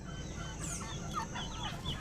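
Chickens clucking, with many short chirps and calls from other birds around them.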